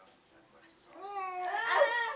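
A domestic cat giving one long, drawn-out meow that starts about a second in and grows louder toward the end.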